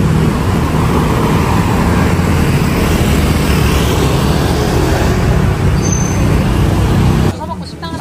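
Busy city street traffic: cars and motor scooters passing in a steady, loud rumble that stops abruptly near the end.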